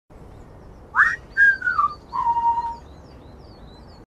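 Whistling in three notes: a quick upward whistle, a falling one, then a held lower note, with faint high chirps over a steady hiss.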